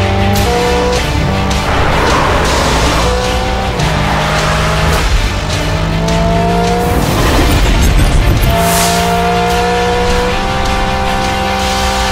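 Hyundai IONIQ 5 N electric performance car driven flat out on a race track: a whine that climbs in pitch several times as it accelerates, with swells of tyre and wind noise as it passes, mixed under a music soundtrack.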